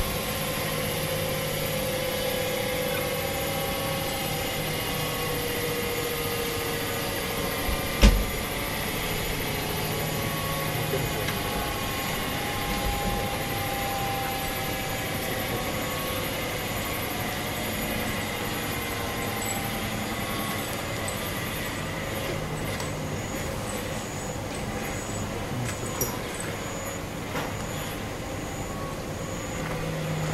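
Choshi Electric Railway DeHa 801 electric railcar standing at the platform, its onboard equipment running with a steady hum and faint whine tones that slowly sink in pitch. A single sharp knock comes about eight seconds in.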